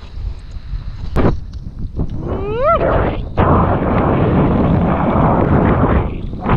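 Wind buffeting an action camera's microphone over open water while kitefoiling, with water sloshing around the board. A short rising squeal comes about two and a half seconds in. From about three and a half seconds a louder, steady rush of wind and water sets in.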